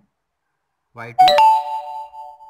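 A loud electronic chime, two quick ringing notes about a second in, the second holding and dying away over about a second, like a ding-dong doorbell.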